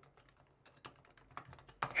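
Computer keyboard typing: a short run of faint key clicks, starting about half a second in.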